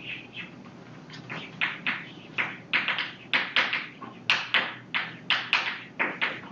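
Chalk writing on a blackboard: a run of short strokes and taps, about two or three a second, coming louder from about a second and a half in.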